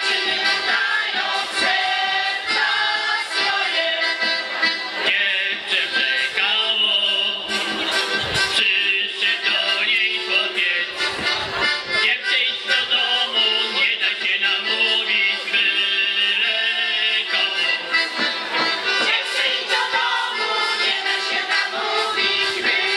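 Women's folk choir singing a folk song together, accompanied by accordion, continuous throughout.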